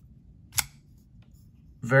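A Rough Ryder RR2084 flipper folding knife is flipped open on its ball-bearing pivot, giving one sharp click about half a second in as the dagger blade snaps out and locks.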